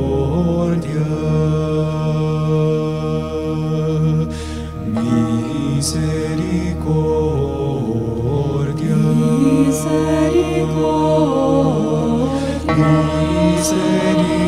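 Slow devotional choral music: voices singing long held notes over a low, steady sustained bass.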